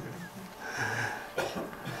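A person's short throat sound, like a cough, about half a second in, then a single click, and a man starting to laugh near the end.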